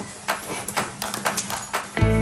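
A dachshund's claws clicking and tapping irregularly on a hard floor, several clicks a second, as the dog scrabbles around a toy ball.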